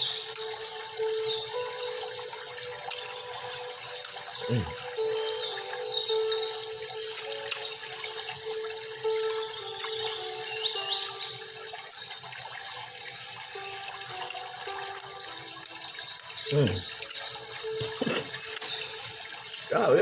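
Soft background music with a slow melody, with birds chirping quickly and repeatedly over it.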